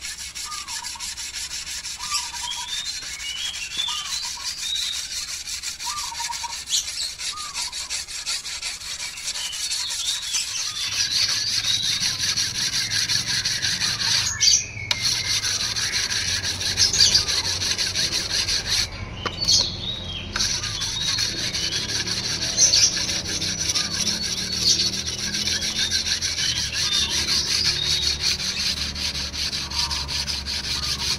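A whetstone scraping back and forth along the steel blade of an egrek, a curved oil-palm harvesting sickle, in steady strokes. The scraping gets louder and fuller about ten seconds in, with a couple of brief breaks.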